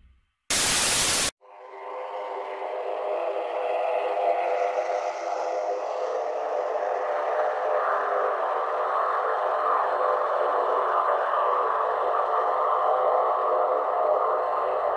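A short burst of loud static about half a second in, cut off sharply after under a second. Then a steady hiss fades in over a couple of seconds and holds: the background noise of a night-vision home security camera's microphone.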